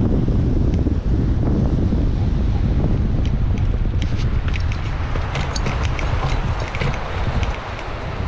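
Airflow buffeting the microphone of a camera mounted on a hang glider flying low and fast, easing off in the second half as the glider slows to land. A scatter of light clicks comes in over the last few seconds.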